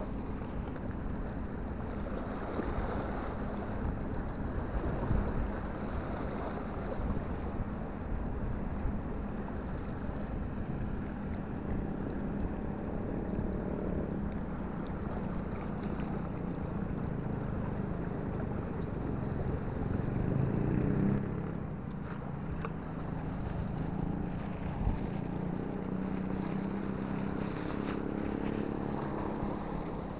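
Wind buffeting the microphone over small waves washing against a rocky seawall, with a steady low engine hum that grows stronger in the second half.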